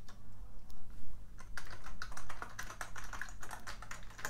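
Black Amiga 3000 keyboard being typed on: a few scattered key clicks, then a quick run of keystrokes from about a second and a half in.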